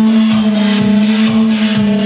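Electronic dance music mixed from a DJ laptop running Traktor Scratch Pro, with a steady beat under a long held bass note.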